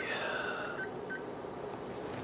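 Two short electronic beeps about a second in, a third of a second apart, from the front panel of a bench AC power source as its setting is changed to inject DC. A faint tone falling in pitch is heard just before them.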